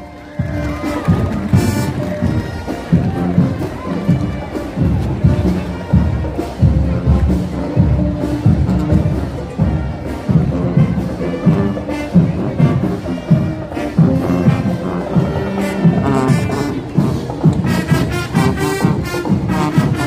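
Marching band playing a march, drums beating a steady rhythm under the brass, with the crowd cheering.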